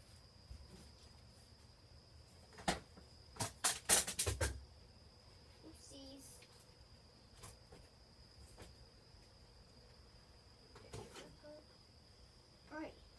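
Quiet room tone with a steady high-pitched tone, broken by a single sharp knock and then a quick run of knocks and thuds from somewhere off-camera, about three to four and a half seconds in.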